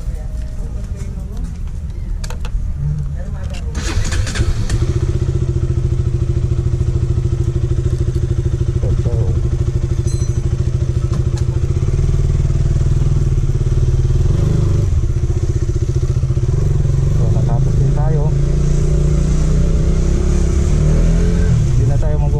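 KTM Duke 200 single-cylinder motorcycle engine starting about four seconds in, then running steadily as the bike rides off, now with its burnt-out stator replaced.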